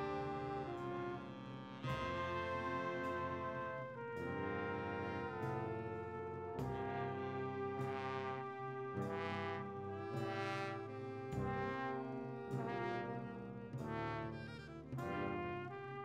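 Slow brass ensemble music of trombones, trumpets and horns playing held, hymn-like chords that change every second or two, in the manner of a funeral dirge.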